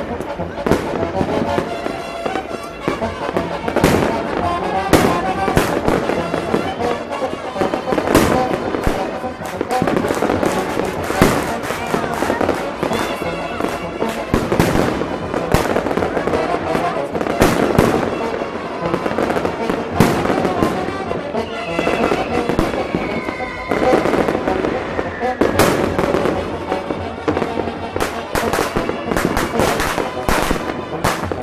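Fireworks going off in a dense, irregular barrage of sharp bangs, many a second at times.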